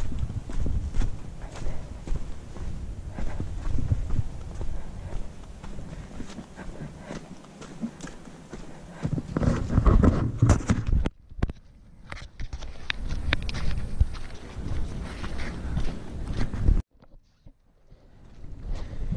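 Footsteps walking at a steady pace on a stony dirt path, over a low rumble. The sound drops out briefly about eleven seconds in and again near the end.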